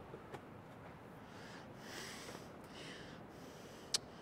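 Low room tone with faint breath-like sniffs in the middle and a few light clicks, the sharpest just before the end.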